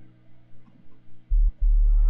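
Deep sub-bass synth notes from the sub layer of the Bass Machine 2.5 Ableton Live rack: a short note about a second and a quarter in, then a longer held note near the end. A very deep tone with nothing higher above it.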